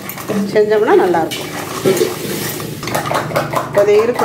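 Raw crab pieces being mixed by hand in a stainless steel kadai, the hard shells clattering and scraping against the metal bowl.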